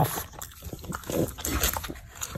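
French bulldog puppy eating a dog cake off a plate: wet chewing, licking and breathing sounds in quick, irregular bursts.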